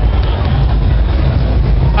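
Loud, steady low rumble with a hiss above it, from a handheld camera's microphone being moved about in a large, noisy hall.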